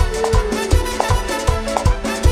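Live band playing an evangelical coro (praise chorus) with a steady kick-drum beat, about three beats a second.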